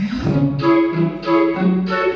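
Instrumental intro of a pop backing track: a repeating melody over a steady beat and bass, before the singing comes in.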